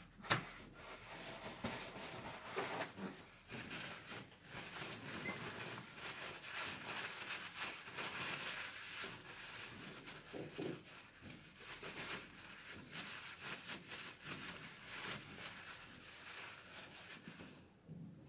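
Paper towel rustling and rubbing as a solvent-cleaned ball bearing is wiped dry by hand, with small ticks of handling throughout and a sharp knock just after the start.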